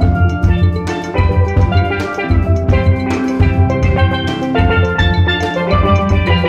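Music with a steady drum beat, about two beats a second, under bright pitched melody notes.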